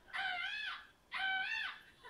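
A woman's high-pitched, bird-like laughing shrieks coming through a television speaker: two long calls about a second apart.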